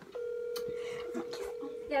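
Telephone ringback tone through a phone's speakerphone: one steady tone lasting nearly two seconds, the sign that the called number is ringing on the other end and has not yet been answered.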